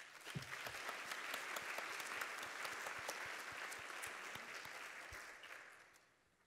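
Audience applauding: dense clapping that starts all at once and dies away over the last second or so.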